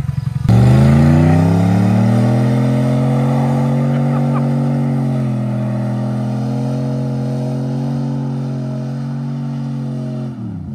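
Dodge Ram 1500 pickup's engine revving hard under load as it tows a dead car up a slope, its wheels throwing dirt. It comes in suddenly, climbs in pitch over the first second or two, then holds a steady high rev.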